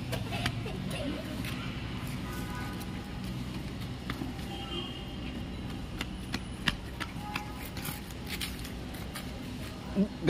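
Outdoor courtyard ambience: a steady low hum with faint distant voices and a few scattered light taps and scuffs.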